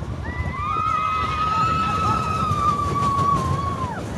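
Several roller coaster riders screaming together in one long held 'whoo', which drops in pitch as it ends, over the low rumble of the mine train running on its track.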